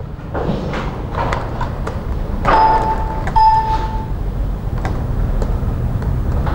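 Room noise with a steady low hum and a few sharp clicks. Around the middle come two short held tones in quick succession.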